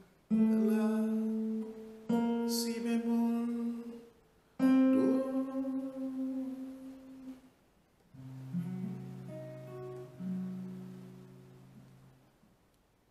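Archtop guitar playing single notes of the auxiliary diminished blues scale one at a time: three plucked notes, each a little higher, about two seconds apart. About eight seconds in, a low chord is struck, a couple more notes are added over it, and it rings out and fades.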